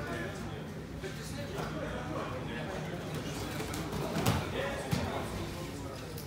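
Murmur of voices in a gym hall; about four seconds in, a loud thump of bodies landing on the mat as one grappler is taken down, followed half a second later by a sharp smack.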